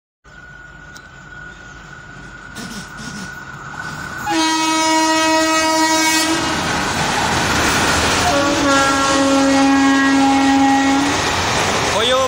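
Passenger train approaching, its rumble growing louder over the first four seconds, then sounding its horn in two long blasts, the second a little lower in pitch, over the loud noise of the train running past.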